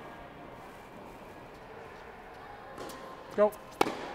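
Quiet room tone, then a tennis ball struck by a racket near the end: a single sharp pop, with a faint knock about a second before it.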